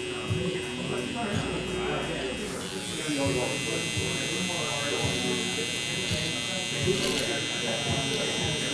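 Electric hair trimmer running with a steady high buzz as it cuts hair; the buzz changes and grows stronger about three seconds in.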